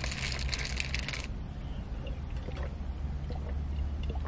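A paper burger wrapper crinkling for about the first second as it is squeezed around the burger. After that, a few faint clicks over a low, steady rumble.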